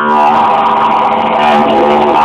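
Didgeridoo drone, a steady low note with overtones that sweep up and down in a wah-like way.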